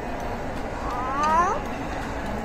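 A young child's voice making one short, high sound that rises in pitch, about a second in, over the steady background hubbub of a busy room.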